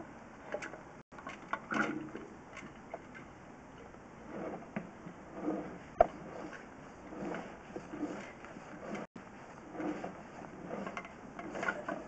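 Drain-inspection camera push rod being pulled back out of a pipe: irregular soft knocks and rattles over a steady hiss, with one sharp click about six seconds in.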